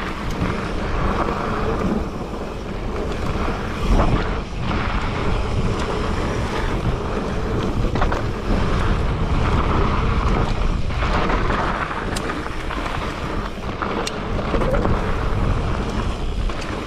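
Wind buffeting the microphone while a mountain bike rolls fast over a dirt and rock trail, tyres rumbling, with a few sharp knocks as the bike hits bumps.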